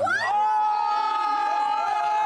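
A long, high-pitched scream of astonishment. It rises at the start, then holds one note for about two seconds, with other people exclaiming faintly around it.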